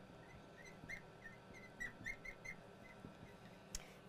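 Felt-tip marker squeaking on a glass board as words are written, a string of short high squeaks in the first half, faint.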